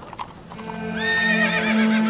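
Horse hooves clopping on dry ground, then a horse whinnying with a wavering call about a second in. Background music with sustained low notes runs underneath.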